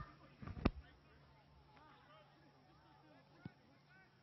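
Faint distant voices of players and spectators across an open sports field, with a sharp click about half a second in and a fainter click about three and a half seconds in.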